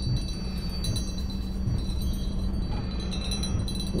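High, ringing chime tones, like wind chimes, held over a steady low hum.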